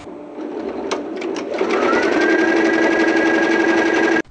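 Tajima multi-head embroidery machine starting up and stitching on a cap frame. A few sharp clicks come about a second in, then the rapid needle rhythm builds up and settles by about two seconds into a steady fast run with a high whine.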